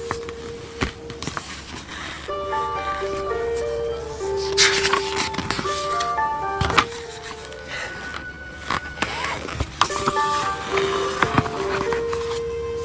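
Background music: a simple melody of plain sustained notes, one at a time. A few short rustles and knocks from the book's pages being handled and turned run alongside it.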